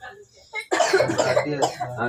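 People's voices at a family gathering: a brief lull, then about two thirds of a second in, several people start talking loudly at once.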